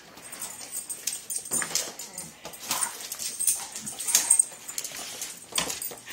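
Boxer dogs at play, a dog whining softly, among scattered sharp clicks and knocks.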